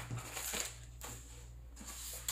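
Soft rustling of paper sewing-pattern envelopes being handled, mostly in the first half second, over a faint low hum.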